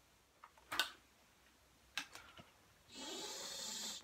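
Breath blown through a detached melodica mouthpiece tube, a steady breathy rush about a second long near the end, with no note sounding; it clears spit that collects in the tube. A couple of light handling clicks come before it.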